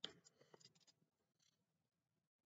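Near silence: a brief soft rustle at the start and a few faint clicks in the first second, then nothing.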